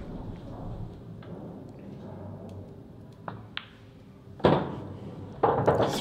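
Pool balls clicking together twice against quiet room tone. About a second later comes a single loud thud that dies away quickly, as the black is potted to end the frame.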